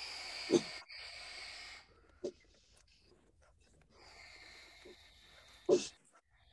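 A person breathing hard during a held-arms exercise: a long hissing exhale, a quiet spell, then another hissing breath, with a brief grunt near the end. The breaths come through a video-call microphone.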